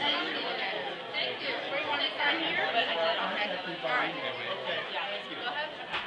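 Indistinct chatter of several people talking at once in a large indoor room, with no one voice standing out.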